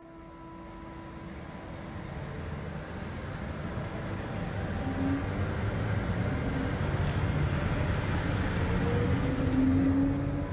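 Road and engine noise inside the cabin of a moving passenger vehicle, a steady low rumble that grows gradually louder.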